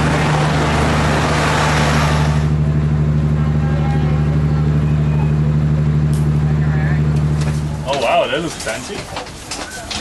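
Diesel locomotive's engine running with a steady low hum. A rushing noise rides over it for the first couple of seconds, and the engine sound cuts off sharply near the end, giving way to voices.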